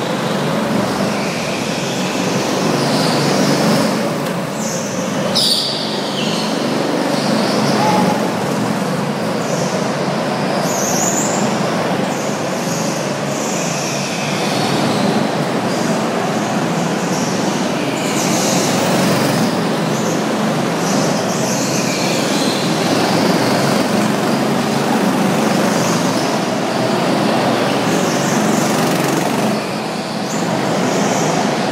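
Go-karts lapping an indoor track, a loud steady running noise with brief rising and falling sweeps, echoing in the enclosed concrete hall.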